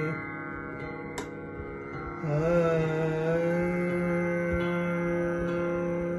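A male khyal singer holding long notes in a slow opening passage of raag Kalyan over a steady drone. The voice breaks off at the start, leaving the drone alone, with a single sharp click about a second in. Just after two seconds the voice comes back with a slight waver and settles on one long held note.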